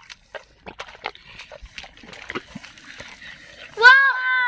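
Hands digging in wet mud, a run of small squelches, slaps and clicks as the mud is scooped out of a mound after a catfish. Near the end a loud, high child's exclamation cuts in.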